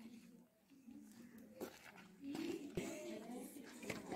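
Faint, indistinct voices from a group of people in the background, with a single sharp click shortly before three seconds in.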